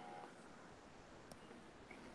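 Near silence: faint room tone, with one faint click just over a second in.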